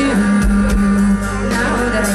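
Live rock band playing in an arena, recorded from the audience: sustained bass notes and guitar under a female lead voice.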